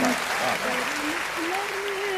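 Audience clapping and applauding after a sung couplet.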